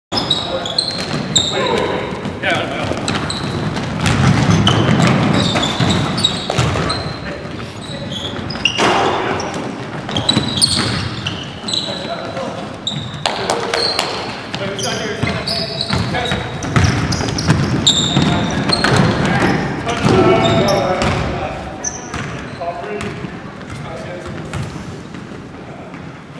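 Pickup-style basketball game on a hardwood gym floor: sneakers squeaking in many short high chirps, the ball bouncing, and players' indistinct shouts.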